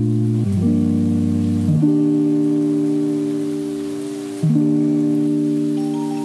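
Background music of held chords that change a few times, with a softer stretch in the middle.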